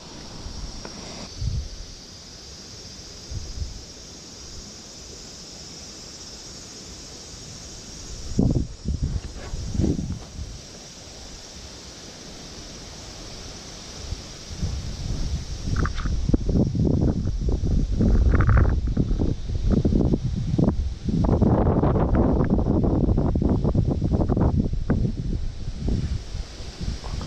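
Wind buffeting the microphone in gusts: light in the first half, then strong and nearly continuous from about halfway on, over a steady outdoor hiss.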